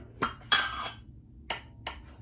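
A makeup brush and a small plastic makeup container being handled: a few sharp clicks and knocks, with a short scraping rustle about half a second in.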